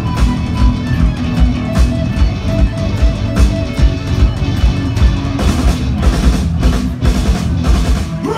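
Live rock band playing an instrumental passage: electric guitars and bass over a drum kit with a steady, driving kick drum. Cymbal crashes join in from about five seconds in.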